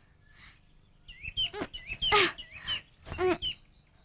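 Birds calling: short chirps and whistled calls that bend in pitch, in a busy cluster from about a second in and a shorter burst a little after three seconds.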